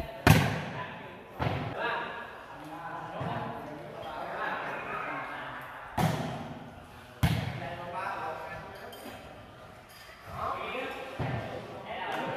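A volleyball being hit during a rally: a sharp hit just after the start, another about a second later, then two more at about six and seven seconds, with a weaker one near the end. Voices talk in the background.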